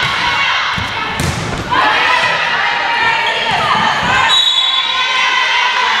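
Volleyball rally in a gymnasium: the ball struck sharply by players' hands, amid high-pitched calling and shouting from players and spectators that echoes in the hall. The loudest moment is a sharp smack of the ball about a second in.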